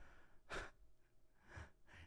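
Near silence with two faint breaths close to the microphone, one about half a second in and one near the end.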